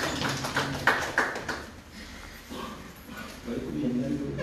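Scattered clapping from a small group in a small room, dying away after about a second and a half, followed by low voices talking.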